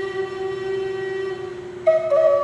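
Wooden Native American flute playing one long held low note that fades slightly, then stepping up to a louder, higher note near the end.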